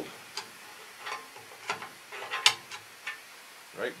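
Irregular metallic clicks and light taps of a long steel screwdriver working against the bare steel frame of a sawmill carriage, about eight in four seconds, the sharpest about halfway through.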